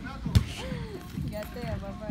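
A soccer ball kicked hard on an indoor turf pitch: one sharp thud about a third of a second in.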